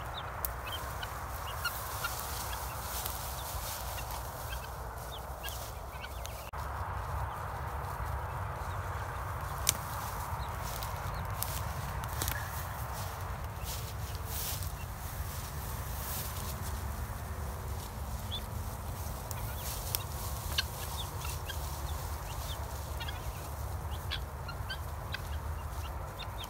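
A flock of 15-week-old guinea fowl calling softly as they move through dry grass and brush, with scattered crackles of dry stems and a steady low rumble throughout.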